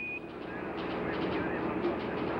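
A short beep, the Quindar tone marking the end of Mission Control's radio transmission. It is followed by steady hiss of radio static on the open air-to-ground link, with a faint hum under it.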